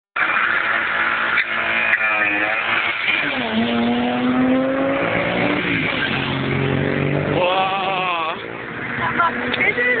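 Car engine accelerating hard at speed, its note climbing through a gear, dropping at a shift and climbing again, with voices shouting over it.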